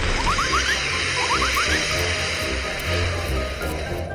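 Tower block collapsing in a demolition: a steady, noisy rumble with a heavy low end. Two quick runs of short rising whistles come in the first half or so.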